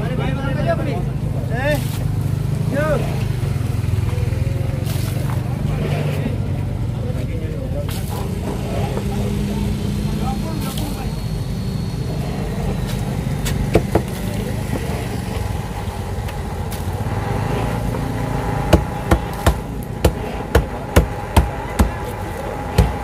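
A large knife chopping tuna on a wooden chopping block. Near the end come about seven sharp chops roughly half a second apart, over a steady low engine drone and some voices.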